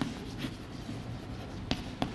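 Chalk writing on a blackboard: faint, short scratching strokes, with one sharp tap against the board near the end.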